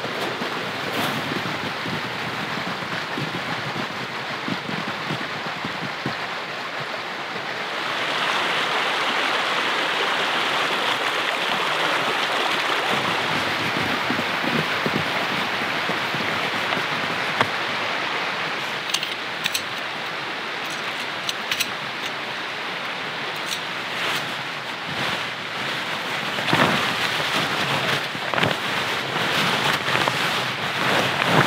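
Steady rush of a mountain stream, louder through the middle stretch. Scattered crunches and clicks come in the second half from footsteps and a plastic sled dragged over snow, and stiff tent fabric rustles near the end.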